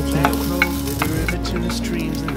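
Chinese sausage slices and garlic cloves sizzling in a clay pot as the sausage renders its fat, stirred with a wooden spatula that knocks and scrapes against the pot a few times in the first second.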